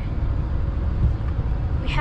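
Car cabin noise while driving: a steady low rumble of engine and road heard from inside the car.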